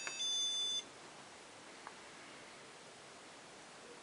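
Push-button click on a CMIzapper Medusa ROM programmer, then a single high, steady electronic beep of about half a second confirming the start of the ME-region clean.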